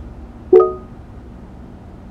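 A single short electronic tone from the Ford SYNC voice-command system about half a second in, fading quickly, over faint steady cabin hum, as the system acknowledges the spoken command.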